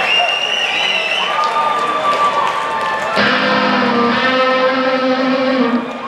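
Concert crowd cheering, then about three seconds in an electric guitar chord is struck and left to ring for nearly three seconds through the amplifiers.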